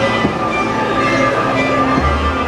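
The dark ride's show soundtrack: a steady mix of held tones and noise from the attraction's speakers.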